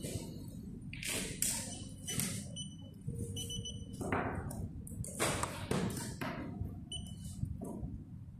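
Handling noises from a replacement phone screen assembly being lifted off a screen tester and turned over on a workbench: a run of rustles and light knocks, with a few brief faint high tones.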